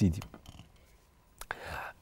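A man's voice ends a word, then a quiet pause with soft breathy sounds and one sharp click about one and a half seconds in, before he speaks again.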